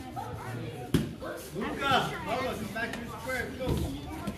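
One sharp thump about a second in, a child's body hitting the foam training mat during sparring, followed by children's voices.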